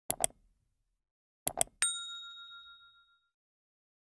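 Subscribe-button animation sound effect: a quick double click, a second double click about a second and a half later, then a single bright bell ding that rings on and fades out over about a second and a half.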